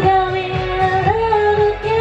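A woman singing long held notes over a pop karaoke backing track with a steady beat. The sung pitch steps up about a second in and is held.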